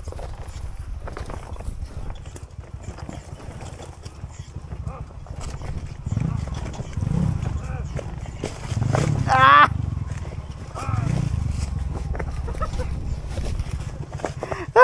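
Trail motorcycle running at low revs as it picks its way up a rocky trail, a steady low rumble with small knocks from the stones underneath. A voice calls out briefly about nine seconds in.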